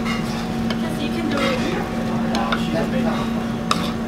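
Noodles being slurped and eaten fast, with a spoon and chopsticks clicking and scraping against ceramic bowls, over a steady low hum.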